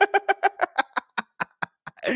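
A man laughing: a quick run of short pitched "ha" pulses, about seven a second, that slows and fades near the end.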